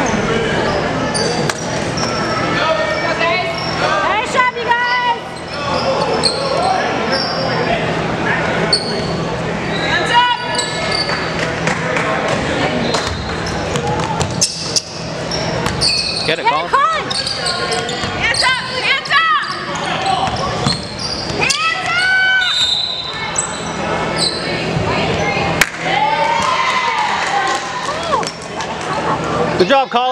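Basketball bouncing on a hardwood gym court amid the bustle of a game: short high squeaks from sneakers and indistinct shouts and chatter from players and spectators, echoing in a large gym.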